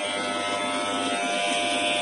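Mains-powered VK Professional electric hair trimmer switched on and running with a steady, even buzz.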